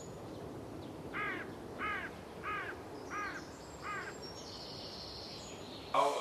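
Five short calls in a row, evenly spaced about two-thirds of a second apart, with a cawing shape like a crow's, over a steady low hiss. A faint high steady tone comes in near the end.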